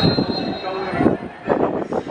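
Players shouting during an outdoor football match, several short loud calls about a second in and near the end, with a brief high steady tone at the start.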